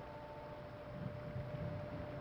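Quiet room tone: a low steady rumble with a faint constant hum.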